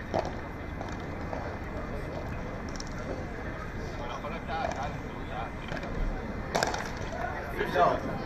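Padel rally: a ball struck by padel rackets, a few sharp hits one to three seconds apart, the loudest about six and a half seconds in. Under them is steady outdoor crowd background with some voices.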